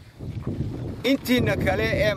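Wind rumbling low on the microphone, then a man's voice speaking from about a second in.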